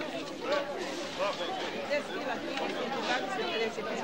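Market chatter: several people talking at once, their voices overlapping.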